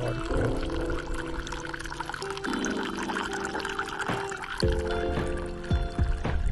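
Water streaming steadily from a hose nozzle into a collapsible cup, a continuous pouring trickle, heard under background music of sustained and plucked notes.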